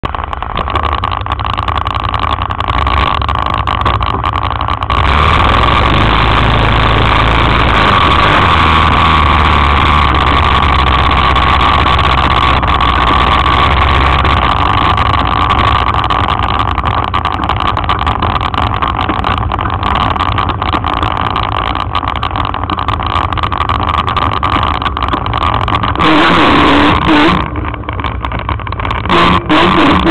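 Can-Am 400 quad's engine running continuously as the quad is ridden, growing louder about five seconds in, with a brief rougher, louder stretch near the end.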